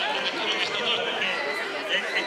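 Crowd chatter: many people talking over one another.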